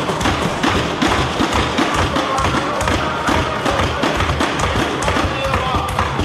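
Members of the House thumping their desks in approval, the parliamentary form of applause: a dense, continuous patter of knocks with voices calling out among it.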